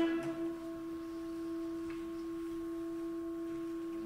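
Orchestra holding a single soft, steady sustained note, almost a pure tone, at the top of a rising run. Fuller, lower notes from the orchestra come in right at the end.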